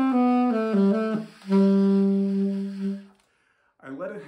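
Conn 6M alto saxophone playing a short run of falling notes, then, after a brief breath, one long low note held for about a second and a half before it fades out.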